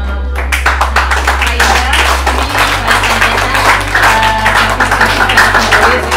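Applause, many hands clapping together, breaks out about half a second in and keeps going, over steady background music.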